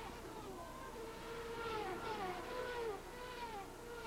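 Indy cars' turbocharged V8 engines passing one after another: several overlapping engine notes that fall in pitch as the cars go by, one held for a second or so before it drops.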